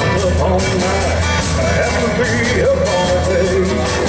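Live honky-tonk country band playing at full volume: drums keeping a steady beat, bass, and electric guitars, with pedal steel in the band. A bending, wavering lead line runs over the top, rising higher about halfway through.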